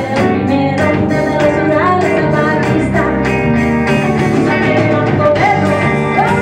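A live rock band playing: a steady drum beat under electric and acoustic guitars and bass, with a lead singer's voice over the top, heard through a concert hall's sound system.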